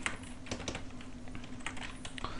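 Typing on a computer keyboard: scattered, irregular keystroke clicks.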